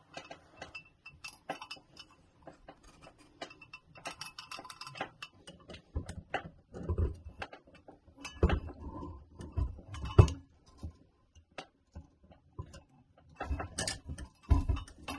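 Irregular small clicks, taps and metallic rattles as wires are tucked into the electrical box and a light fixture is fitted onto its metal mounting plate, with a few louder knocks in the second half.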